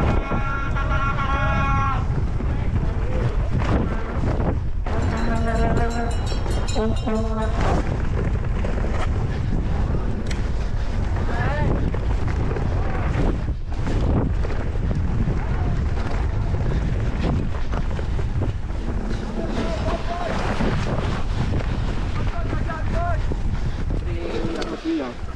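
Wind buffeting the action camera's microphone during a fast mountain-bike run down a dirt dual-slalom track, with the bike knocking and rattling over the bumps. Shouted voices cut in near the start and again about five to seven seconds in.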